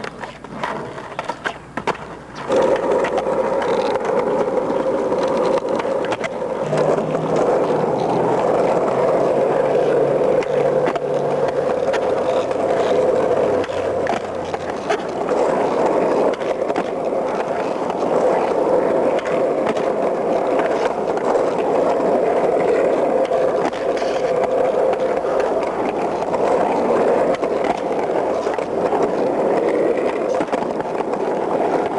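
Freestyle skateboard's wheels rolling and spinning on asphalt in a loud, continuous, steady rumble. A few sharp clicks of the board come first, in the opening two seconds.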